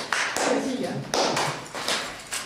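Scattered hand claps as applause tails off, with people's voices over them.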